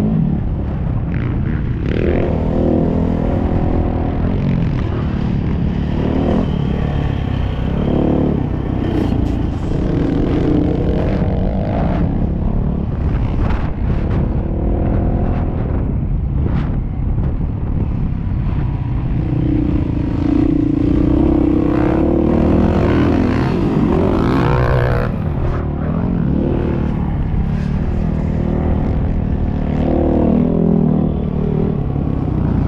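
Dirt bike engine being ridden hard around a motocross track, its pitch repeatedly rising and falling as the throttle opens and shuts through the turns and jumps, over a steady rumble of wind and chassis noise.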